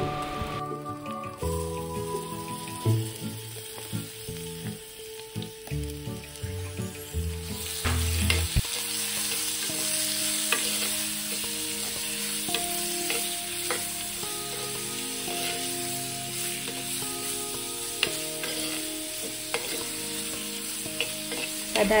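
Sliced onions and garlic sizzling in hot oil in a clay pot, stirred with a steel spoon that scrapes and clicks against the pot. The sizzle grows louder about a third of the way in.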